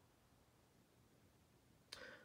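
Near silence: room tone in a pause between spoken sentences, with a faint short click near the end.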